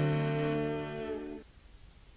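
The band's final held chord fading out, cut off about a second and a half in, leaving only faint tape hiss.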